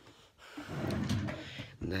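A plastic storage drawer sliding shut, a noisy sound lasting about a second.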